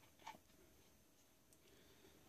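Near silence: room tone, with one faint click about a quarter of a second in as metal hydraulic fittings on the pump block are handled.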